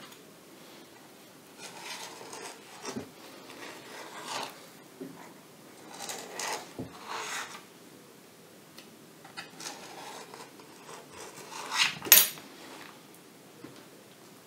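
Hand-handling of small hard parts: irregular scraping and rubbing with light clinks while working at a part that is stuck, with a sharper, louder scrape about twelve seconds in.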